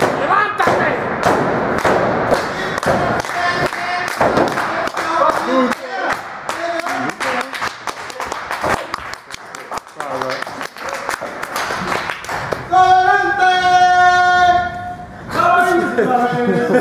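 Spectators' voices over a run of sharp thumps and claps. Near the end, one voice holds a long sung note for about two and a half seconds.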